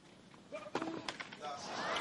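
Tennis rally on a clay court: sharp racquet-on-ball strikes about half a second in and again just after, with short voice sounds around them. Crowd noise starts to build near the end as the point develops.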